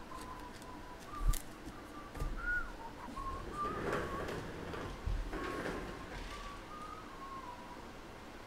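A person softly whistling a wandering tune. There is a sharp knock about a second in, and cards rustle as they are handled around four and five-and-a-half seconds in.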